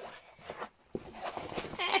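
Rustling of a large diamond-painting canvas being tugged back and forth, with a voice rising near the end.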